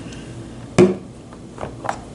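A plastic food container set down on a kitchen counter with one sharp knock a little under a second in, followed by a few lighter clicks of things being handled.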